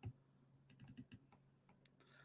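Near silence with a few faint clicks: a stylus tapping on a pen tablet, one tap at the start and a small cluster about a second in.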